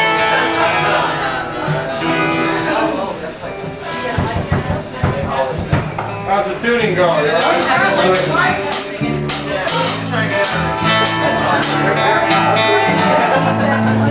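Acoustic guitar and other unplugged instruments playing loosely between songs, with several sharp strikes around the middle and indistinct voices in the room.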